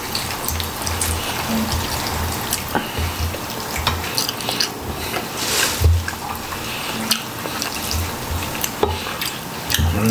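Close-miked wet, squishy sounds of fingers tearing apart a soft, juicy whole chicken, with many small clicks and short low thumps of chewing scattered through.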